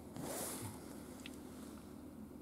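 A brief soft rustle, about half a second long, just after the start, over a faint steady low hum.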